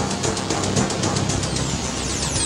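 Electronic wrestling entrance music playing loudly with a steady beat. Near the end a falling, whistling sweep begins.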